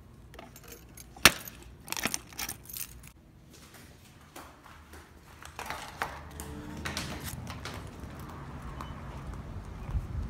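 Keys jangling on a keyring and a small metal post office box lock and door clicking: one sharp click about a second in, then a few more over the next two seconds. A steadier background noise sets in from about six seconds in.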